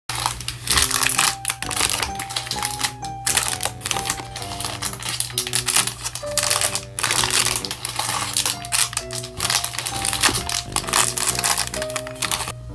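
Cellophane wrappers on small packages crinkling and rustling as they are handled, in dense crackly runs. Background music with a simple melody of held notes plays underneath.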